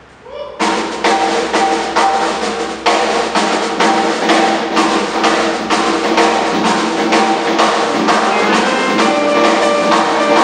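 A live band starts playing about half a second in: drum kit strikes about twice a second under sustained chords, with saxophone, electric bass and keyboard on stage.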